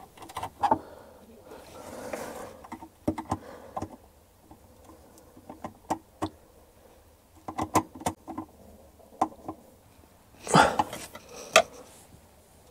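Scattered light clicks and knocks of hands handling electrical cables and fittings at close range, in small clusters, with a soft rustle about two seconds in and a louder rustling burst near the end. A short laugh comes right at the start.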